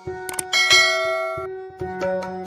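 A sound effect of two quick clicks, then a bright bell chime that rings out and fades over about a second: the notification-bell sound of a subscribe-button animation.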